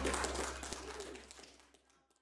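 Church congregation applauding, dying away and fading to silence shortly before the end, over a low steady hum.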